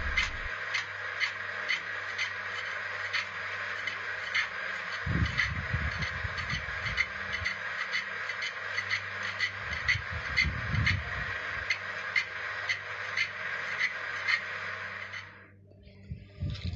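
A hand chisel scraping a spinning log on a wood lathe as it is turned into a drum shell. A steady scrape with a regular tick about three times a second, and two spells of low rumble. The sound cuts off about a second before the end.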